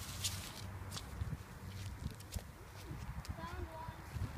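Rustling of strawberry plants being parted by hand and footsteps in a dirt furrow between plastic-mulched rows, over a steady low rumble on the microphone. Faint distant voices come in near the end.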